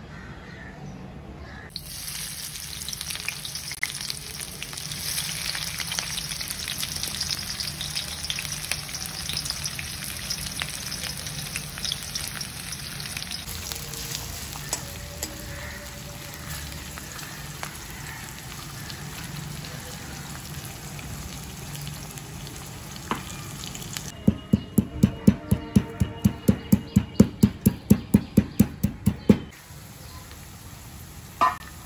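Sliced red onions frying in hot olive oil in a stainless-steel kadhai, the sizzle jumping up about two seconds in and running on steadily. Near the end, a metal spatula knocks against the steel pan about four times a second as the onions are stirred.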